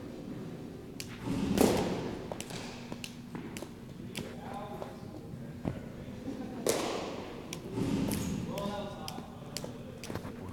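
Baseballs thrown to a catcher hitting with thuds, the loudest about a second and a half in and again near seven and eight seconds, with lighter knocks between.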